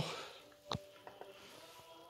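Mostly quiet: one sharp click a little under a second in, then a few faint ticks, over a faint steady hum.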